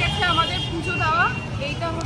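A woman talking over steady low street traffic noise.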